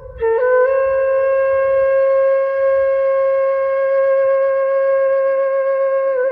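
Background music: a flute-like wind instrument holds one long, steady note. It slides up into the note just after the start.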